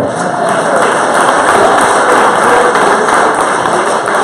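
An audience applauding.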